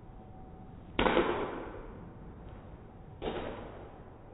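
Two golf shots, each a club striking a ball: a sharp crack about a second in, then a second, quieter one about two seconds later, each with a short echoing tail.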